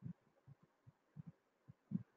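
Near silence broken by faint, irregular low thuds, several a second, the strongest just before the end.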